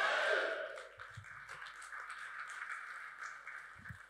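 Audience applause that is loudest at the start and fades within the first second or so to a faint patter.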